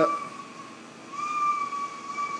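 A 3D-printed recorder, printed in four sections fitted together, being blown: a held high note trails off in the first half second, then a second steady note of about the same pitch sounds from about a second in for most of a second.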